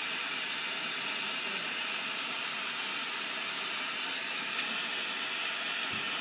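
Lampworking bench torch burning with a steady, even hiss of gas jetting through the flame.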